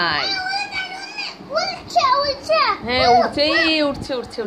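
A young child's high-pitched voice making wordless calls, several rising and falling in pitch, loudest about three seconds in.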